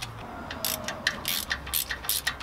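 Ratchet wrench clicking in short, irregular bursts as it works loose the exhaust manifold nuts.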